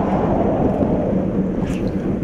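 Fishing boat's engine running steadily, with wind buffeting the microphone.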